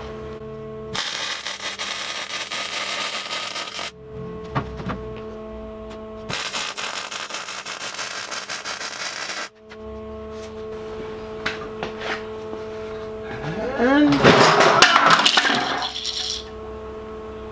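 MIG welder laying two short welds, each a steady crackling burn of about three seconds with a pause between, over a steady electrical hum. A louder burst of noise follows near the end.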